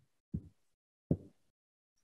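Dead silence on a noise-gated video-call microphone, broken twice by a brief, low sound from the presenter, about a third of a second in and again about a second in.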